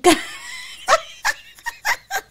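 A woman laughing: one loud breathy outburst at the start, then a run of short, separate giggling pulses.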